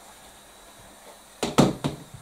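Three quick knocks on a chopping board in the last half second, as the board and the cut cabbage on it are handled.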